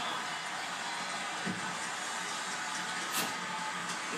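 Hockey game playing on a television: steady arena crowd noise in a gap in the play-by-play commentary, with a brief sharp click about three seconds in.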